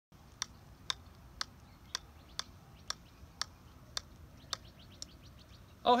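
A golf ball bounced again and again on the face of an iron: about ten light, sharp clicks at an even pace of roughly two a second, stopping shortly before the end.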